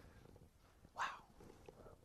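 Near silence, a pause in a recorded talk, broken about a second in by a man saying a short, breathy 'Wow.'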